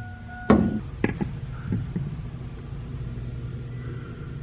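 A steady low hum with two short knocks, about half a second and a second in, and a few fainter taps a little later.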